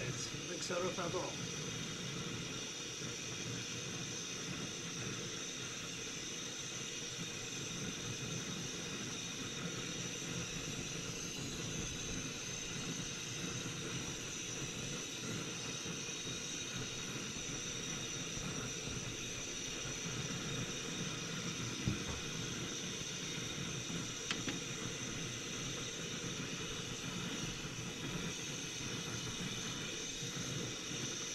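A steady hiss runs throughout. Two faint clicks late on come as a knife works at fish on a plate.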